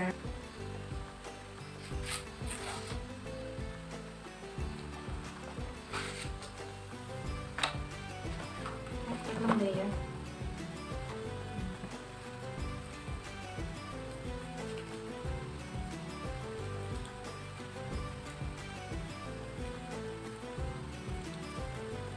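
Background music with a steady pattern, and a few short knocks and clicks from plastic containers and food packs being handled on a table, the loudest about nine and a half seconds in.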